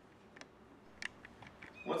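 Faint handling of a vinyl seat cover over a foam seat cushion: a few brief, quiet clicks and squeaks over room tone, with a man's voice starting near the end.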